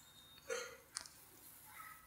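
Quiet room tone with a few faint mouth sounds from the lecturer: a brief soft throat or breath sound about a quarter of the way in, a small click about halfway, and a faint breath near the end.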